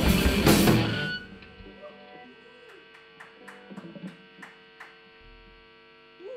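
Live rock band of electric guitar, bass and drums playing loud, then stopping abruptly about a second in as the song ends. After that only a steady amplifier hum remains, with a few faint clicks and taps.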